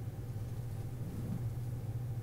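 Steady low hum of room tone, with a faint murmur of voices about a second in.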